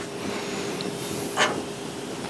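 Steady background hiss of room tone with a faint hum, and one brief soft sound about one and a half seconds in.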